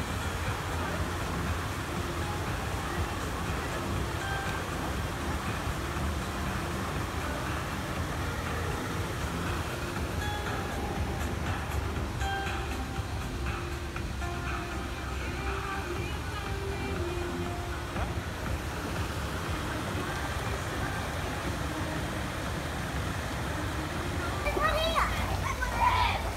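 Steady outdoor background noise with indistinct distant voices and faint music, no clear words.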